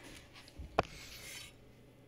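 A single sharp click a little under a second in, amid a brief rubbing, scraping noise: the parts of a freshly bolted-together radiator relocation bracket being handled.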